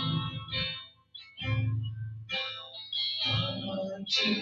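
Electric guitar played through a chorus effect as worship accompaniment, in phrases with a brief pause about a second in.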